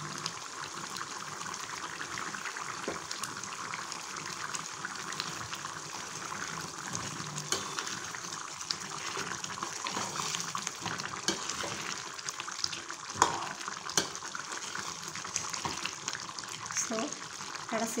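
Thick chicken gravy simmering and sizzling in a steel pot while a metal spoon stirs it, with a few sharp clicks of the spoon against the pot in the second half.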